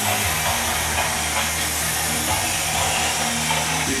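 A model-railway sound app's locomotive running sound, played through a small Bluetooth speaker: a steady hiss over a low hum that shifts pitch a few times.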